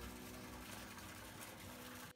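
Faint, steady splashing of a small water spout pouring into a garden pond, over quiet background music.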